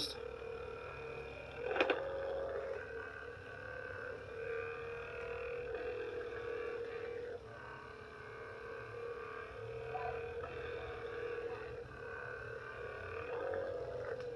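Handheld percussion massage gun with a flat head running at its second-fastest speed against a thigh: a steady motor hum whose pitch wavers slightly, with a brief knock about two seconds in.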